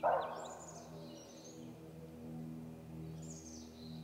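High, descending bird calls, twice, over a steady low hum; a brief loud rush of noise right at the start is the loudest sound.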